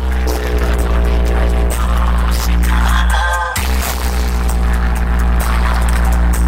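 Loud dance music played through a truck-mounted DJ sound system of towering bass speaker cabinets, a heavy sustained bass under a pitched melody. The bass cuts out briefly a little past halfway and slams back in.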